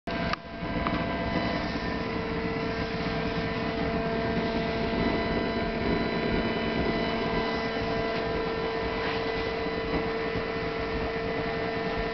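Steady hum made of several fixed tones over a low noise, unchanging throughout, with a single click right at the start.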